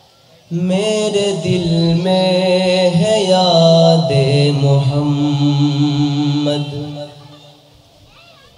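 A man singing a naat unaccompanied into a microphone: one long drawn-out phrase of held notes that step and slide in pitch. It starts about half a second in and fades out about a second before the end.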